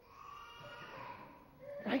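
A hushed pause with a faint, drawn-out voice-like sound lasting about a second, then a man's voice begins an exclamation near the end.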